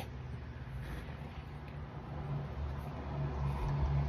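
A brief laugh, then a low, steady background rumble with a faint hum.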